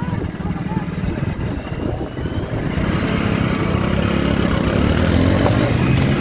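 Motorcycle engine running steadily while riding along the road, louder from about halfway through.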